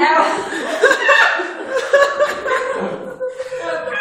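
People laughing loudly with wordless vocalizing, voices overlapping without a break.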